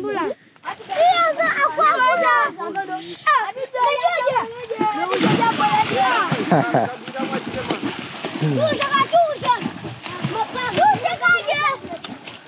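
Children splashing as they jump and swim in a river pool, with a large splash about five seconds in, under steady voices shouting and chattering.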